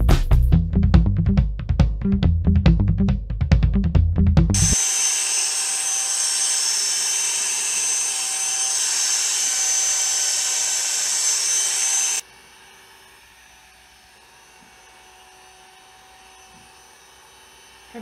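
Background music with a strong beat for the first few seconds, then corded electric hair clippers buzzing loudly and steadily close up as they cut hair. About two-thirds of the way through they suddenly become much fainter.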